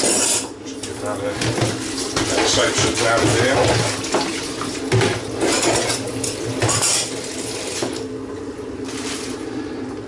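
Stainless steel keg parts clinking and clattering against the keg and a steel sink as the opened corny keg's lid and fittings are handled, with repeated sharp metallic clinks.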